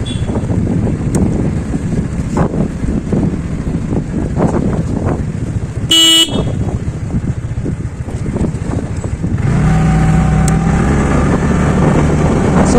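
TVS Ntorq scooter riding slowly, its engine and road noise running under wind on the microphone. A horn gives one short beep about halfway through, and about three-quarters of the way in the engine note grows louder and steadier.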